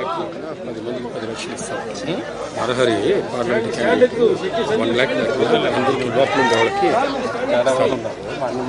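Several men talking at once: overlapping crowd chatter with no single clear voice.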